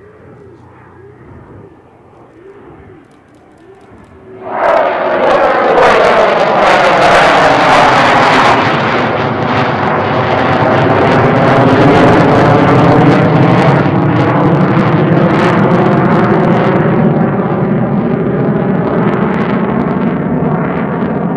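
F-15 fighter jet's twin engines, faint at first, then a sudden loud roar about four and a half seconds in as the jet passes close. The roar stays loud, crackling, with a sweeping, phasing sound as it goes by.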